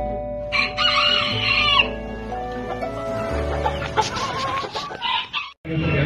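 A rooster crows once, one call lasting about a second and a half that starts about half a second in, over background music with sustained notes.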